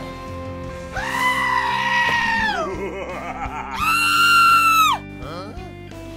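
Two long, high-pitched wailing cries over background music, about a second apart, the second pitched higher than the first, each sliding down as it ends.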